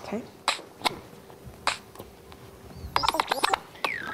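A record being cued by hand on a turntable running Serato Scratch Live, over a faint steady hum. There are two single clicks, then from about three seconds in a quick run of short back-and-forth scratches as the first beat of the track is found.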